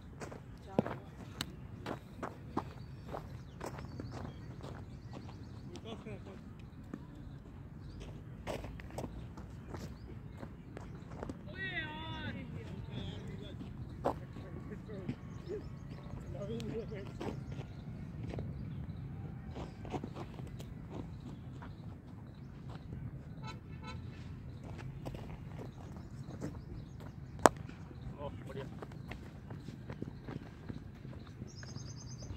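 Open-air cricket ground ambience with distant players' voices and scattered small clicks, a warbling call about twelve seconds in, and a single sharp knock near the end.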